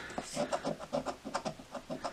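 Rapid, quiet scratching strokes, about five a second, as the silver latex coating is rubbed off a scratch-off lottery ticket.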